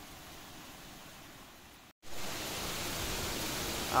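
Steady hiss of typhoon wind and rain. It drops out for a moment about halfway through, then comes back louder.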